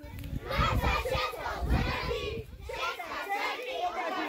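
A group of young children shouting together, many voices at once, with a low rumble under the first half.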